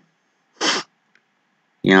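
A man's single short, explosive burst of breath, about half a second in, like a stifled sneeze or cough. Speech starts near the end.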